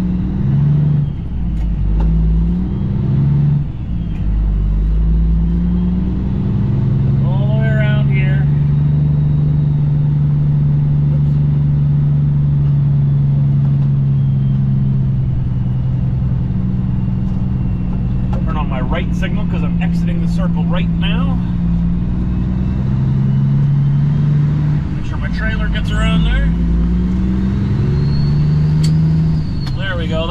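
Cummins ISX diesel engine of a 2008 Kenworth W900L truck running under load, heard from inside the cab. Its pitch steps through gear changes in the first few seconds and again in the second half, and holds steady in between.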